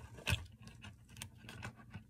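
A few light clicks and taps from handling a broadhead caddy and the metal broadheads seated in it, the sharpest about a third of a second in.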